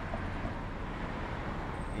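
Steady low rumble of street traffic.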